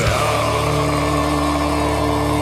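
Gothic doom metal band holding a chord at the end of a song. After a crash right at the start, steady sustained notes ring on with no drumbeat.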